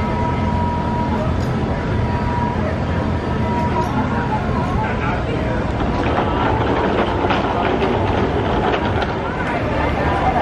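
A steady rumbling noise like a vehicle in motion, with a faint steady tone during the first few seconds.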